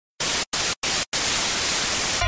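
Static hiss in three short bursts about a quarter second each, then steady static from about a second in.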